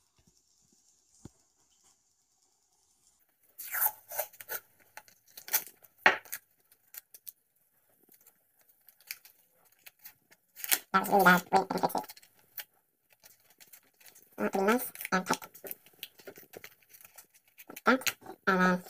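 Adhesive tape being pulled off the roll and torn in short crackling rips, a few seconds in, as a matchbox is taped shut. Brief bits of voice come in later.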